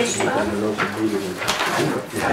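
People chuckling softly, mixed with low murmured talk.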